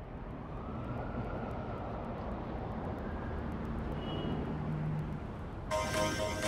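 A steady, noisy rumble fades in and holds, with a faint rising whine early on; about five and a half seconds in, instrumental music with plucked notes starts over it.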